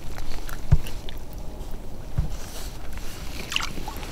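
Water sloshing against the side of a plastic kayak as a smallmouth bass is released by hand, with two dull knocks on the hull and a short splash near the end as the fish goes.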